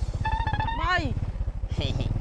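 A small engine running steadily with a fast, even low pulse, under people talking.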